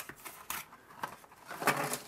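Cardboard jigsaw puzzle box being opened by hand: clicks and rustling of the box flap, then a louder burst near the end as the cardboard pieces slide out onto paper.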